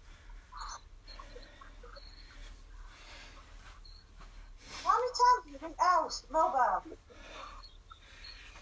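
Quiet room noise, with a short stretch of a person's voice about five seconds in, lasting around two seconds.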